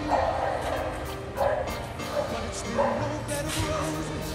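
A cocker spaniel giving several short, excited barks about a second or so apart, with music playing underneath.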